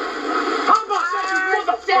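Film soundtrack heard through a television's speaker: men's laughter and excited yelling as a scuffle breaks out, with a short loud sound about two-thirds of a second in.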